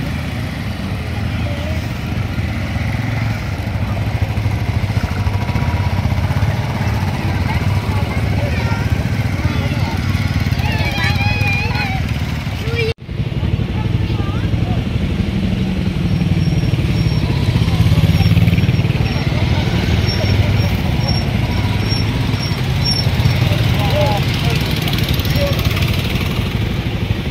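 Several motorcycle engines running at low revs, with a crowd's voices over them. The sound breaks off for an instant about halfway through, then engines and voices go on again.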